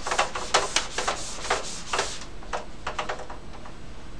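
Whiteboard eraser scrubbing back and forth across the board: a quick run of rubbing strokes that thins to a few single wipes after about two seconds.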